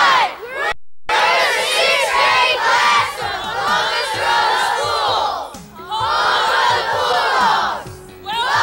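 A large group of children shouting together in unison, in three bursts: a short one at the start, a long one after a brief break about a second in, and another after a pause past the five-second mark.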